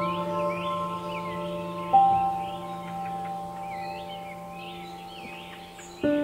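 Slow, soft piano music: held notes fade away, with one new note struck about two seconds in, over a layer of birdsong chirps.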